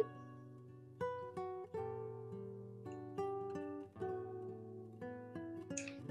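Quiet background music of plucked guitar notes, one after another, each fading away, over a low held bass note.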